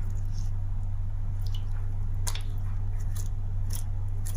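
Wet fingers squeezing crystallized Ariel laundry-detergent paste over a tub of soapy water: soft squishing with a few sharp crackles and drips back into the water. A steady low hum runs underneath.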